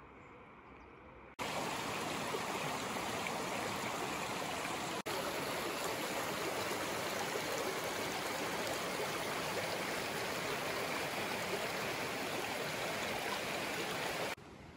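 Shallow mountain stream flowing over stones, a steady rushing of water. It starts abruptly about a second and a half in, after a brief faint stretch.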